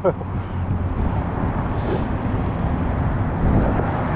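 Wind on the microphone: a steady low rumble with no distinct events.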